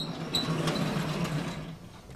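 Sliding chalkboard panel being moved along its track: a metallic clack with a short ring, a second clack, then a rumbling run of nearly two seconds that fades out.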